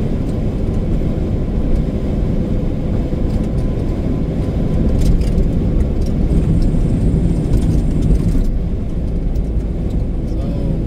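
Steady low drone of a semi-truck's engine and tyres heard from inside the cab at highway speed, with a faint steady tone running through it.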